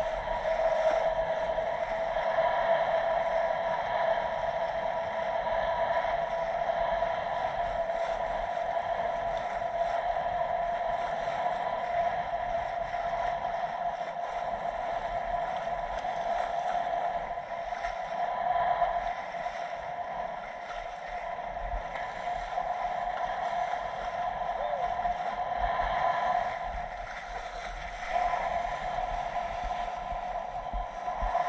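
Boat engine running at a steady, slightly wavering pitch, with water rushing past the hull.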